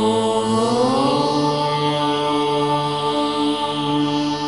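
Indian devotional background music: a chanted vocal line that glides up in pitch about a second in and then holds a long note, over a steady drone.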